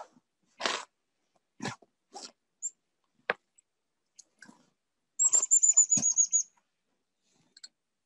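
A small bird calls a quick run of about ten high, slightly falling notes about five seconds in. Around the call are scattered short rustles and a sharp click.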